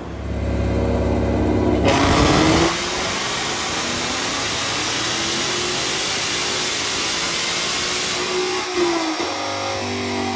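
Roush-supercharged 5.0-litre V8 of a 2022 Ford Mustang GT making a full-throttle pull on a chassis dyno during tuning. It runs low at first, then opens up sharply about two seconds in, and its pitch climbs steadily for about seven seconds. Near the end the throttle closes and the revs fall away.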